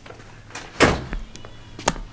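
An exterior house door pulled shut with a thud about a second in, followed by a sharp click near the end.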